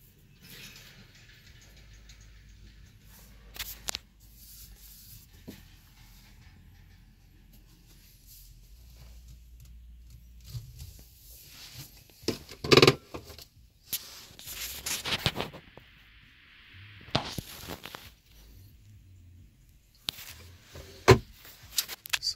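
Scattered clicks, knocks and rustling of handling inside a car's cabin over a faint low hum, with the sharpest knocks about 13 and 21 seconds in.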